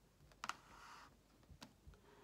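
Near silence with a few faint, short clicks and a soft faint hiss between them.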